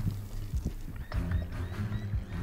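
Footsteps of a person running across grass, a series of quick thuds over a steady low rumble.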